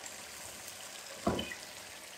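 Faint steady sizzle of masala simmering in a frying pan. About a second and a quarter in, a single soft thud as chicken tikka pieces are pushed off a plate into the sauce with a wooden spatula.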